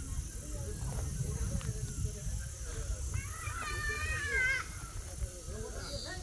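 Faint voices of people talking over a steady low rumble. About three seconds in comes one drawn-out, high-pitched call lasting about a second and a half.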